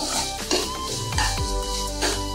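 Background music with held notes over onion-tomato masala sizzling in oil in a kadai, stirred and scraped with a metal spatula.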